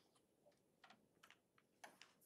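Faint ticks of a stylus tapping on a tablet screen while handwriting, a few in the second half, against near silence.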